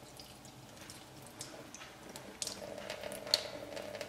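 Water running from a sink tap and splashing as a soaped paintbrush is rinsed under it. It is faint at first and grows louder about two and a half seconds in.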